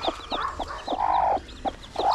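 Broody hen clucking from her nest of newly hatched chicks, with one longer, drawn-out call about a second in. Short high peeps from the chicks come in all through.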